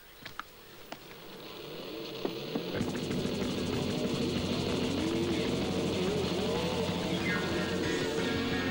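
Rock music fades in and swells over the first three seconds until the full band comes in and plays on.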